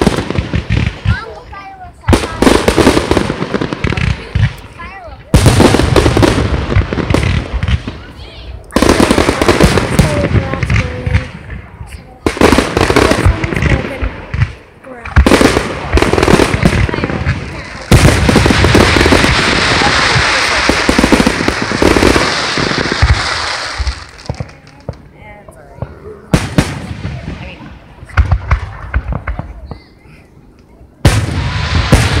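Aerial fireworks going off in quick succession, with sharp bursts every second or two. For about five seconds past the middle there is a long, dense crackle.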